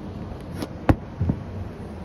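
A 1/24 scale slot car, converted from a Maisto radio-control Formula One car, running along a Carrera track. A steady noise runs under a few sharp clicks; the loudest click comes about a second in.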